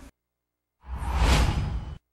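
Whoosh sound effect of a news-bulletin logo transition: a noisy rush with a deep low end swells in almost a second in, peaks and cuts off abruptly.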